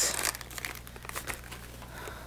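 Plastic card packaging crinkling as it is handled, loudest in the first half second, then lighter rustling.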